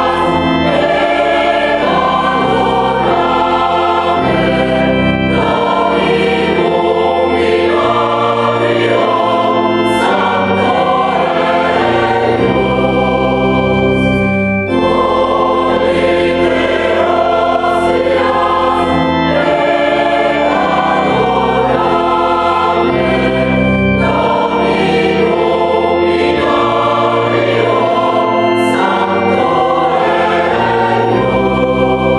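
Mixed choir of sopranos, altos, tenors and basses singing a sacred Christmas piece with organ accompaniment, sustained chords with full organ bass, briefly breaking between phrases about halfway through.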